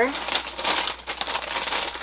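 White packing paper crinkling and crackling as it is folded and pressed around a clothing bundle, a dense run of fine crackles throughout.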